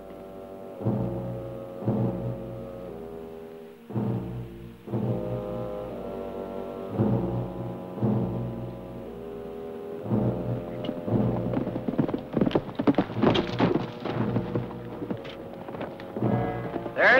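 Orchestral western film score playing held chords with heavy accented hits every second or two. In the last few seconds the clatter of horses' hooves comes in under the music as riders arrive.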